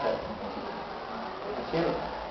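Steady background noise in a small room during a pause in a man's talk, with a brief spoken sound near the end.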